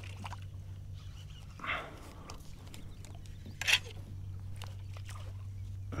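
A hooked gar thrashing at the kayak's side, with two brief splashes, the sharper one near the middle, over a steady low hum.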